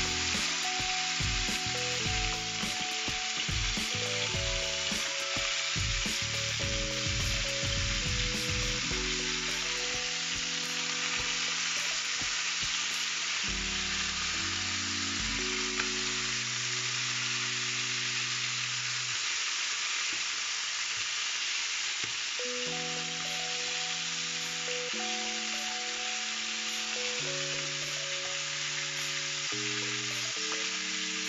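Chicken pieces frying in hot oil in a non-stick pan: a steady sizzle, with a fork now and then knocking and scraping as the pieces are turned. Soft background music with held chords that change every second or two plays underneath.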